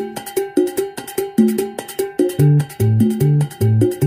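Latin dance music, salsa-style, in an instrumental stretch without vocals: a quick, regular pattern of percussion clicks over short repeated pitched notes. A bass line joins about halfway through.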